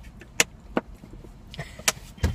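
Low rumble of a car cabin on the move, with three sharp clicks from something handled in the passenger's lap. The last and loudest click comes just after a short hiss near the end.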